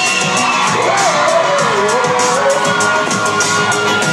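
Live pop performance: a male singer sings into a handheld microphone over a loud backing track with a steady beat, played through the venue's PA in a large hall.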